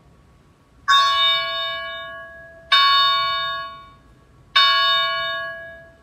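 Altar bell rung three times, the strokes evenly spaced a little under two seconds apart, each ringing out and fading. It marks the elevation of the chalice at the consecration.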